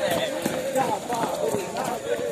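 A group of police recruits singing a cadence while jogging, their voices fainter after the nearest singer has passed, with footfalls on the ground.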